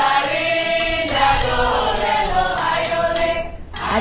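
A group of voices singing together over a steady percussive beat; the singing fades out shortly before the end.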